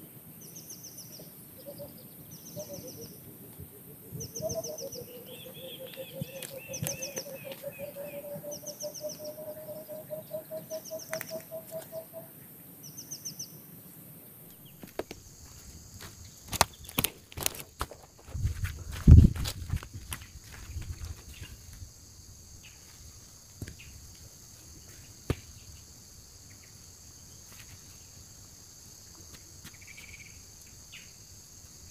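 Birds calling over a steady insect drone in a rural clearing: a short high chirp repeats about once a second, and a long series of low notes climbs slowly in pitch through the first half. In the middle come a few sharp knocks and one loud low thump, the loudest sound, before the background settles to the insect drone.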